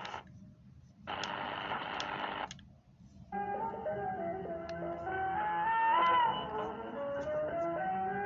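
Shortwave receiver hiss in two short bursts, with dropouts between, as the Sony ICF-7600GR is switched between presets. About three seconds in, a song broadcast on 11905 kHz comes in through the radio's speaker with a melody and accompaniment.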